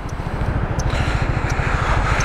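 Zontes 350E scooter's single-cylinder engine running under way as a rapid low pulsing that grows slightly louder, with wind noise on the microphone rising from about a second in.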